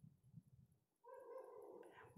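Near silence: room tone, with a faint, brief pitched whine from about a second in, lasting just under a second.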